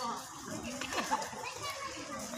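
Indistinct voices of several people talking in the background, with no clear words.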